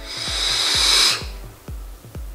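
Smok Devilkin vape mod firing its sub-ohm tank coil during a long inhale: a steady hiss of air and vapour drawn through the tank that swells for about a second and then stops suddenly. Faint background music with a steady beat plays underneath.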